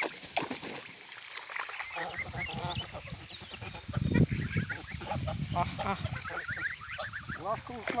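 A flock of young domestic grey geese calling over and over with short honks and peeps as they swim. About four seconds in, a louder low, noisy sound rises under the calls.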